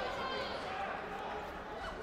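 Indistinct voices and calls from coaches and spectators, overlapping and echoing in a large sports hall, with a few soft thuds mixed in.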